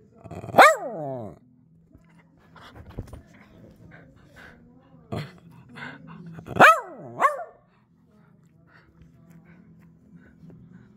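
A dog howling in short calls: one howl about half a second in that falls in pitch, then two more close together past the middle, the first of them dipping and rising again.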